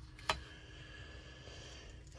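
Quiet room tone with a single short click about a third of a second in, a small handling sound.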